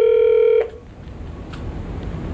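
A steady electronic telephone beep that cuts off abruptly about half a second in, followed by faint phone-line hiss and a single click.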